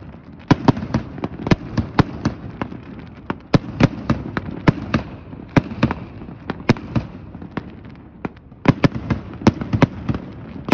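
Aerial fireworks shells bursting: an irregular run of sharp bangs, several a second at times, with brief lulls about three and eight seconds in.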